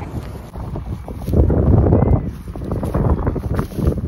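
Wind buffeting the phone's microphone in uneven gusts, loudest about a second and a half in and again near the end.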